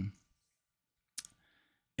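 A pause in a man's speech: near silence broken by one sharp click a little over a second in, followed by a faint short hiss.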